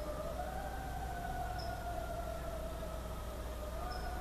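A sustained high tone with a fainter overtone above it, holding mostly steady but sliding slightly: it dips and rises in pitch near the start and steps up again near the end.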